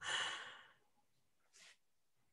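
A person sighs, a long breathy exhale that fades out over about half a second, close to the microphone just after laughing. A shorter, softer breath follows about a second and a half in.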